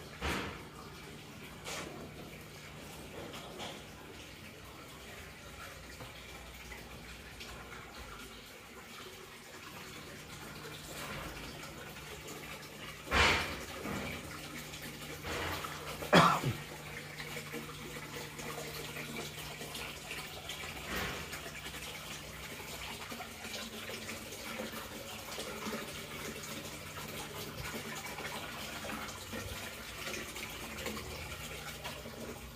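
Water trickling in a glasshouse pond over a steady low hum. About halfway through come two short louder sounds three seconds apart, the second falling in pitch.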